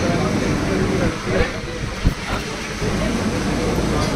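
Indistinct chatter of a small crowd of people talking at once, over a steady background hum, with two short sharp clicks about one and a half and two seconds in.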